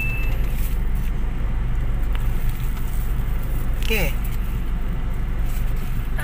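Steady low drone of a Honda automatic car's engine and tyres heard from inside the cabin, cruising at an even speed.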